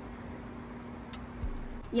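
A faint, steady low hum, with a few light clicks near the end.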